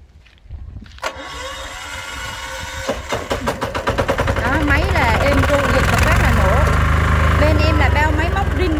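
Yanmar L75 single-cylinder diesel engine of a mini dump carrier starting about a second in, picking up near three seconds, then running loud and steady with fast even firing pulses.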